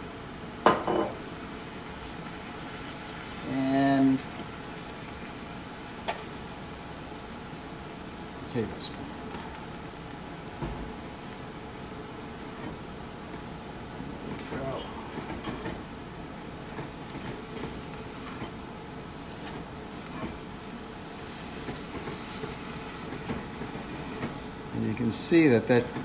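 Stir-fry being tossed and stirred in a hot cast-iron wok with a slotted spatula: scattered scrapes and clicks over a steady low sizzle. The sizzle is damped because the soy sauce and ketchup just added have cooled the pan.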